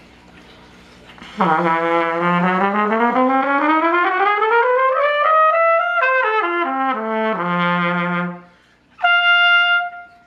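Cornet played solo, starting about a second and a half in. It slurs smoothly upward from a low note for about four seconds, then drops back down in quick steps to a held low note. After a brief gap it holds one steady high note near the end.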